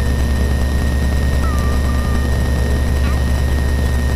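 Piper Saratoga's single piston engine and propeller running at low power on the ground before the takeoff run, a steady low drone heard through the cockpit intercom. A faint steady high whine of intercom interference runs under it.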